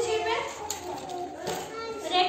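A group of young children's voices, several talking and calling out at once.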